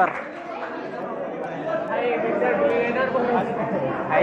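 Many people chattering at once in a large hall, overlapping voices with no single clear speaker.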